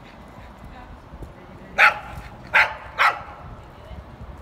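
A dog barking three times, short barks: the first about two seconds in, then two more close together.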